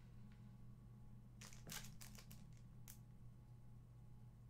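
Near silence over a low steady hum, broken about halfway through by a short run of faint clicks and scrapes as a hard plastic PCGS coin slab is handled and turned over in the fingers.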